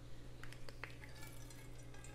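Faint sound of lime juice dripping from a handheld lime squeezer into a stainless steel bowl, with a few small clicks from the squeezer in the first second.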